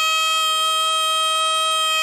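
Nadaswaram, the double-reed wind instrument of South Indian temple music, holding one long steady note.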